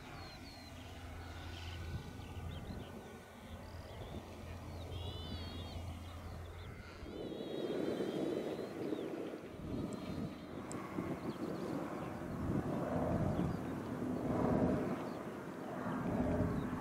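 Radio-controlled model airplane flying overhead, its motor and propeller giving a steady low drone that grows louder and rougher from about halfway as it comes closer. Birds chirp briefly in the middle.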